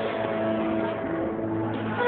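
Live smooth jazz band holding a low sustained chord on keyboards and bass, the higher parts thinning out midway.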